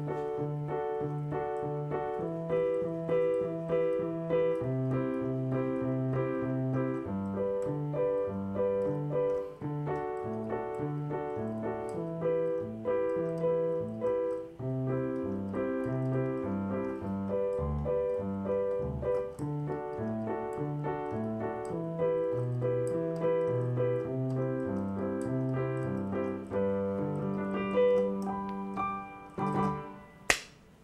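Digital keyboard on a piano sound playing the chord progression G, D, E minor, C: sustained right-hand chords over a moving left-hand bass line. The playing fades out about a second before the end.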